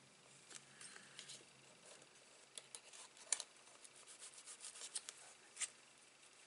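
Faint light rubbing and small scattered clicks of hands and metal tweezers working paper pieces on a card, with the sharpest click about three seconds in.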